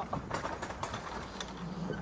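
A few light clicks and rattles of a wooden field gate's metal latch and chain being handled, over a low steady rumble.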